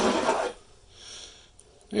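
A person's breath close to the microphone: a breathy exhale at the start, then a fainter intake of breath about a second in.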